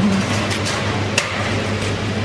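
Restaurant kitchen noise: a steady low hum under a constant clattery background, with a sharp click or knock about a second in, around steel serving trays and foil-wrapped food being handled.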